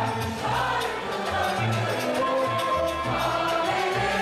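A Turkish art music (Türk Sanat Müziği) choir of men and women singing together with an instrumental ensemble, a double bass marking low notes beneath the melody.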